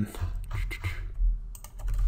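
Computer keyboard clicking: a run of irregular key taps, with a short gap in the middle.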